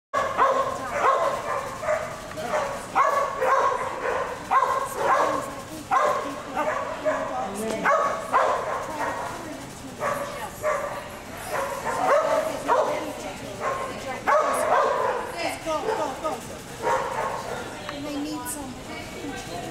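A dog barking over and over in quick, sharp barks, about two a second, with no letup.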